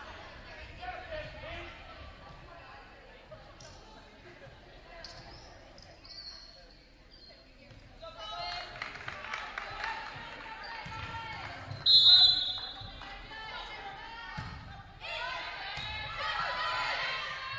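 Volleyball being played in a gym's hall: ball thumps and players calling out. About three-quarters of the way in comes a short, sharp referee's whistle, the loudest sound, and near the end a thud and a rise in players' and spectators' shouts as the rally begins.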